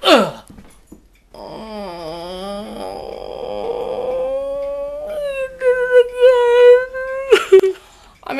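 A man's drawn-out wailing howl after a short yelp at the start. The pitch dips and rises, then holds on one wavering note for about three seconds before breaking off.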